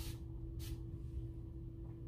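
Two short spritzes from a hand-held spray bottle misting a section of hair, one right at the start and one about half a second later, over a faint steady hum.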